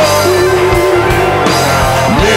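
Blues-rock band recording with guitar, bass guitar and drums playing over a steady beat, and one long held note through most of it.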